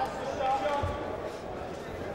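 Boxing arena crowd noise with voices, and a single dull thud about a second in as the boxers trade blows in a clinch.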